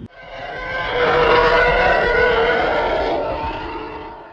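Spaceship engine roar sound effect with a steady hum inside it. It swells over about a second, holds, then fades out near the end.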